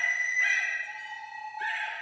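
Flute and recorder in a contemporary chamber piece, holding two long notes, one high and one lower. The notes are cut across by three sudden noisy bursts that sweep upward: one at the start, one about half a second in and one near the end.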